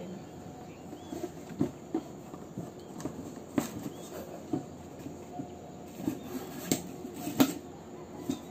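Handling of a stiff cardboard gift box and paper shopping bag: irregular taps, scrapes and rustles, with a sharper knock near the end.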